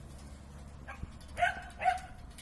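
A dog barking: two short barks in quick succession about a second and a half in, with a fainter one just before.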